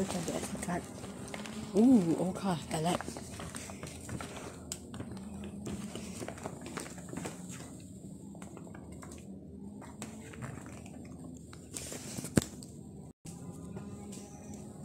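A short voiced call with a rising and falling pitch about two seconds in, then low murmur and room noise in a large indoor hall, with a single sharp click near the end.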